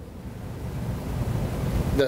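A low rushing noise with no tone or voice in it, building slightly over two seconds.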